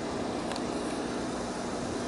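Steady outdoor background noise: an even hiss with a faint low hum running underneath, and no distinct knocks or shots.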